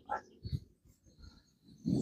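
A pause in a man's speech: faint background rumble with a couple of brief soft sounds early on, and his voice starting again near the end.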